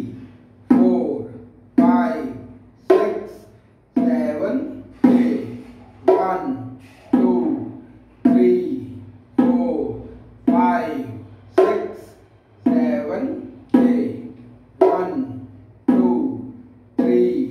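A man's voice sounding out a rhythm in steady syllables, about one a second, each sharply attacked and fading away.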